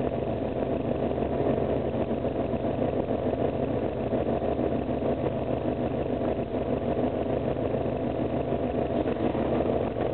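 Pinzgauer's fuel-injected engine idling steadily at about 800 rpm, still in its warm-up fast idle after a warm start.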